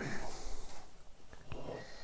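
Low handling noise as a vintage tube-radio chassis is turned around on a workbench mat: a soft rustle and scrape, with a couple of light ticks about one and a half seconds in.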